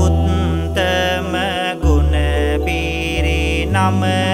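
A Buddhist monk chanting Sinhala devotional verse (seth kavi) in long, drawn-out notes over backing music with a deep sustained bass that changes note every second or so.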